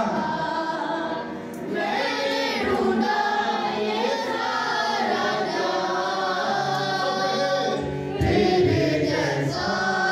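A woman singing an Urdu Christian worship song (masihi geet) with long held notes, over steady harmonium accompaniment.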